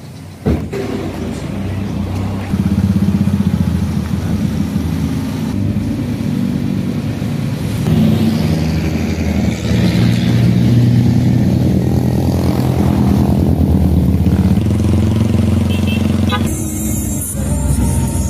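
A motor vehicle engine running steadily, with a sharp knock about half a second in.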